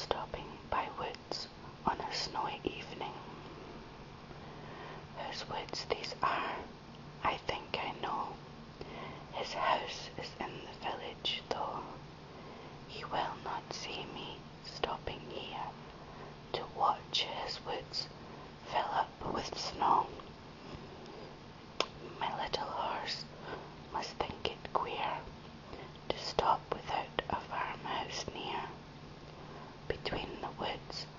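Whispered reading of a poem: breathy, unvoiced speech in short phrases with brief pauses, over a faint steady low hum.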